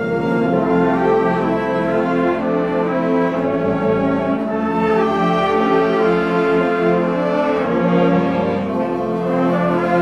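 A school orchestra of violins, flutes and brass playing a Christmas song in slow held chords, with the brass prominent.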